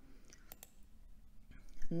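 Two quick, faint clicks of a computer mouse about half a second in, clicking to change the presentation slide.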